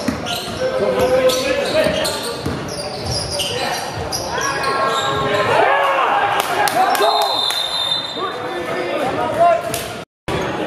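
A basketball bouncing on a hardwood gym floor during live play, with players' voices shouting. The sound echoes in a large indoor hall.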